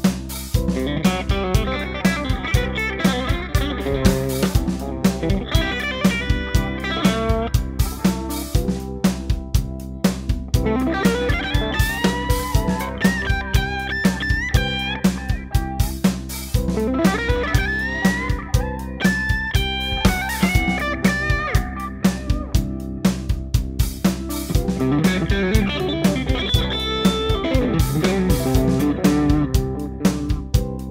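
Mensinger Foreigner electric guitar playing melodic single-note lead lines, with string bends and slides.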